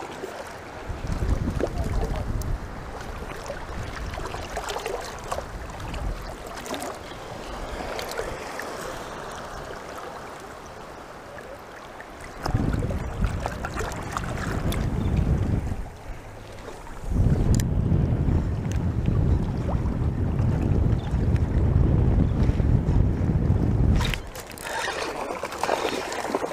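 Water sloshing and lapping close by, then heavy wind buffeting on the microphone in two long gusts, one about twelve seconds in and a longer one from about seventeen to twenty-four seconds.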